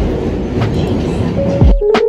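Steady rumble and rattle of a commuter train running, heard from inside the passenger car. Near the end it cuts off and light background music with clear plucked notes begins.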